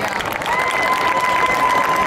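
Stadium crowd applauding, with a long, high, steady cheer or whistle held over the clapping.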